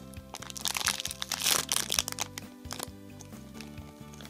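Clear plastic bag crinkling and crackling as hands squeeze and turn a foam squishy toy sealed inside it, mostly in the first half, over soft background music.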